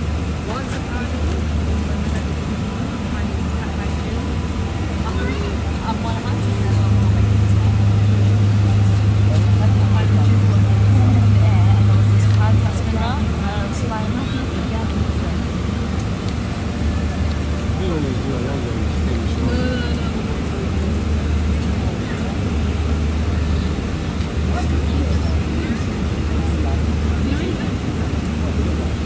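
Airliner cabin noise: a loud, steady low roar from the engines and air system, with a deeper hum swelling louder from about six to twelve seconds in.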